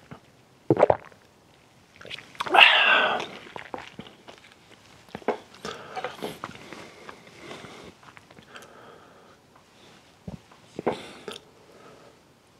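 Close-miked eating and drinking sounds: a swallow of soda just under a second in, then a louder voiced breath out about two and a half seconds in. After that come scattered small clicks and knocks as the cup is set down and a spoon and paper cup are handled.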